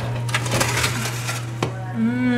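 Wire oven rack being pulled out by a mitt-covered hand, the metal scraping and rattling in its rails with a sharper clink a little past the middle, over a steady low hum.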